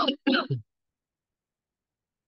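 A person clearing their throat: two short bursts right at the start.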